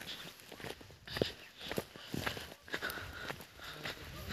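Footsteps of a person walking along a hill path at a steady pace, about two steps a second.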